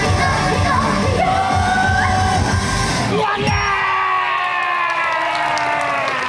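Idol pop song performed live, the singer's voice over a backing track with a steady beat; about three seconds in the beat stops and a long final note is held, sliding slowly downward as the song ends, with some whoops from the audience.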